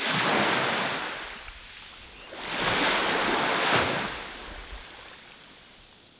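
Ocean surf washing in two swells. The first sets in suddenly, and the second builds about two and a half seconds in and dies away after about four seconds.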